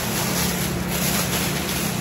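Steady rushing noise with a low hum underneath, while a thin plastic grocery bag is handled and rustles.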